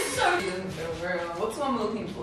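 Women's voices over faint background music.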